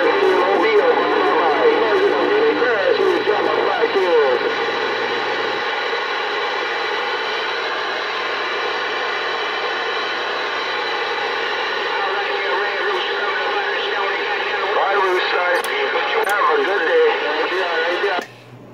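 Galaxy CB radio receiving: a steady rush of static laced with steady whistles and warbling, garbled distant voices. The voices are strongest in the first few seconds and again near the end.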